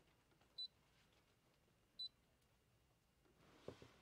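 Two short, high beeps about a second and a half apart: the Brother ScanNCut's touchscreen confirming stylus taps. Otherwise near silence.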